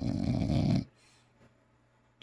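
A flat-faced dog making one rough, rattling grunt through its nose and throat, lasting under a second at the start.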